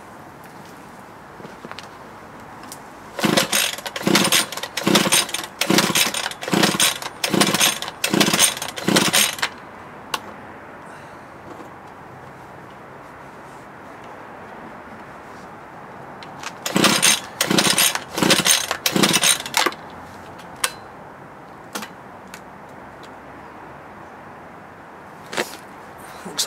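Hyundai multi-tool petrol engine being cranked with its recoil pull starter in two quick bouts of repeated strokes, about ten and then about five, without firing: the stop switch has been left on, so it cannot start.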